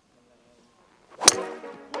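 Golf driver striking a teed ball once: a single sharp crack about a second and a quarter in, with a short ringing tail.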